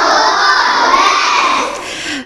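A class of young children shouting together in chorus, many voices held in one long, loud call that eases off near the end.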